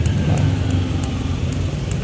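A steady, low-pitched motor hum with a few faint high ticks over it.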